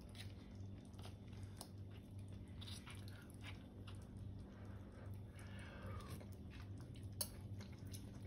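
Metal spoon scooping through cooked paella rice in a frying pan: faint, irregular soft scrapes and clicks, with one sharper click near the end, over a low steady hum.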